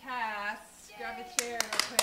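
A woman speaks briefly, then a small audience starts clapping about one and a half seconds in, the scattered claps quickly thickening into applause.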